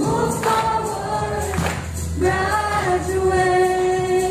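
A group of students singing a song together over a musical accompaniment with a beat, ending on a long held note.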